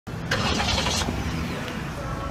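A car engine running with a steady low hum, and a short rustle of handling noise in about the first second.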